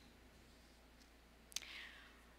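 Near silence: room tone with a faint low hum, heard through a handheld microphone. About one and a half seconds in comes a single click, followed by a short breath-like hiss, like a mouth click and an intake of breath close to the microphone before speaking.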